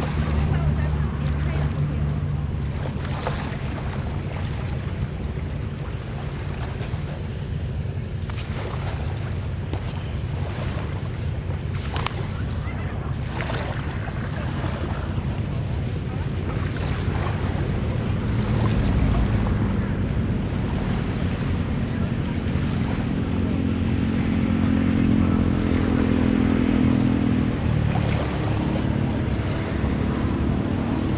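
Steady low rumble of wind buffeting the microphone over small sea waves washing in the shallows.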